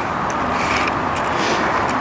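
Steady rushing background noise with no distinct event in it.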